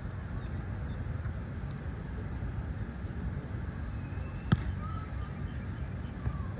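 Steady low rumble of wind on the microphone, with one sharp slap about four and a half seconds in: a volleyball being struck by a player's hand or arm on the sand court.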